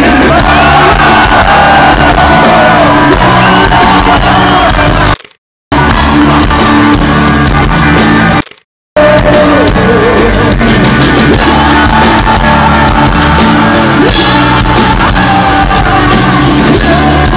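Live rock band playing loud, with a male lead vocal over bass and drums. The sound cuts out completely twice, briefly, about five and eight and a half seconds in.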